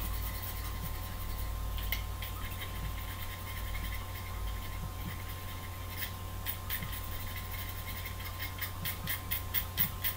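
Craft knife blade scraping a pencil's graphite lead in short strokes to taper it: a few faint scrapes at first, then a quicker run of about three to four scrapes a second in the second half.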